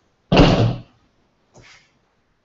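Scissors at work cutting the rug's lacing. A sudden loud knock-like sound comes about a third of a second in and lasts about half a second, and a short faint snip follows near the end.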